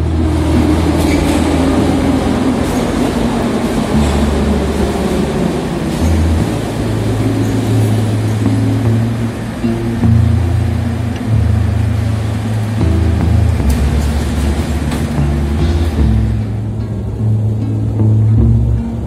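Background music with slow bass notes, laid over the running noise of a metro train in the station; the train noise comes in suddenly and fades out near the end, leaving the music.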